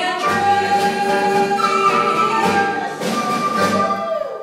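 Small live band with flute playing the closing bars of a song, on long held notes.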